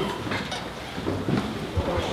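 A room of people milling about: scattered overlapping chatter mixed with the rustle of coats and the bumps of people moving around.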